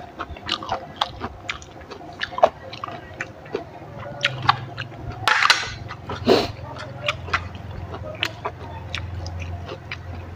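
A person eating close to the microphone: wet chewing with many irregular mouth clicks and smacks, and two louder, noisier bites or breaths about five and six seconds in.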